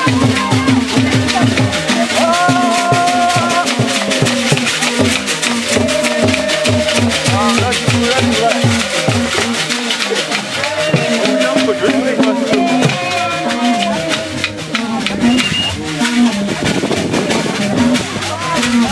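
Ngoma drums and shaker rattles beating a fast, steady rhythm, with a group of voices singing and chanting over them for dancing.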